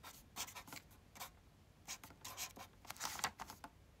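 A felt-tip permanent marker writing: a run of short, irregular pen strokes with brief pauses between them.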